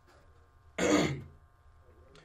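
A man clears his throat once, close into a studio microphone, in a single short burst about a second in.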